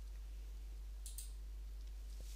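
Quiet room tone with a steady low hum and one soft click about a second in, the kind made when a presentation slide is advanced.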